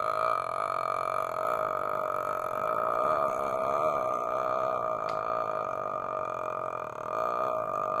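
A man holding one long, drawn-out hesitation "uhhh", a steady, unbroken vowel sound of the voice that barely changes.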